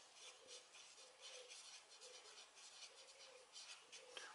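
Faint scratching of a marker pen writing a word on paper, a run of short pen strokes.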